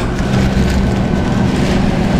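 Steady low hum of fast-food kitchen equipment, with faint clicks and clatter from behind the counter.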